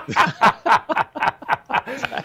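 Male laughter: a run of short chuckles, about four a second.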